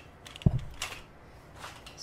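A single dull thump on the drawing surface about half a second in, followed by two brief scratchy rubs on paper.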